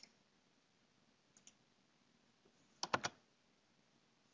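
Computer mouse button clicks: a single click, a faint pair about a second and a half in, and three quick clicks about three seconds in.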